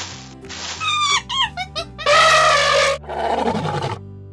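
Channel intro jingle: music with animal sound effects. A quick run of falling pitch glides comes about a second in, then a loud held animal-like call, then a falling, fading sound near the end.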